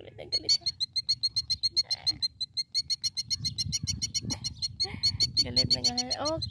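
Killdeer giving a fast, steady trill of high pips, about ten a second: the agitated alarm call of a bird defending its egg on a ground nest.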